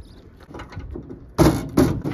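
Faint small clicks, then two loud knocks close together about a second and a half in, from boots and hands on the metal rear of a tipper truck as it is climbed.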